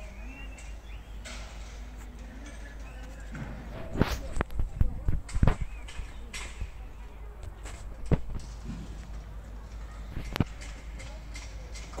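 Outdoor ambience with a steady low rumble and faint distant voices. A quick cluster of sharp knocks comes about four to five and a half seconds in, and single knocks follow near eight and ten seconds.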